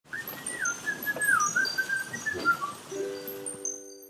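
Animated logo jingle: a warbling, whistle-like bird call over a rushing noise, then a short held chord with high tinkling chime tones near the end.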